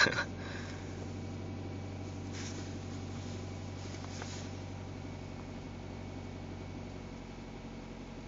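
2011 Nissan Sentra SE-R Spec-V's 2.5-litre four-cylinder engine at a steady fast idle just after a cold start at −16 °C, heard from inside the cabin. The gearbox is in neutral with the clutch let out, and the engine holds a raised cold idle a little over 1,000 rpm.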